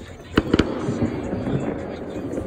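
Phone microphone being handled and rubbed against a shirt: two sharp knocks a little under half a second in, then steady rustling and scraping of fabric over the microphone.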